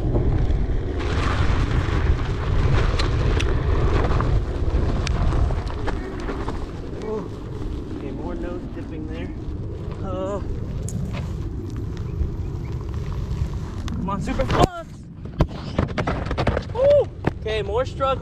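Electric onewheel with a SuperFlux hub motor climbing a steep dirt hill: a steady low rumble from the tyre on rough ground, with a few short grunts from the rider. About fifteen seconds in the ride stops, and the rumble gives way to footsteps and knocks on the dirt.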